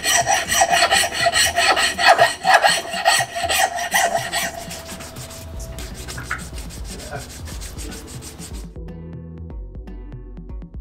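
Hand file rasping on cow bone in repeated back-and-forth strokes for about the first half, then fading off. Music with a beat comes in near the end.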